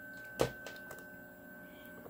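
Faint steady high-pitched electronic whine from running power equipment, with a single sharp click about half a second in.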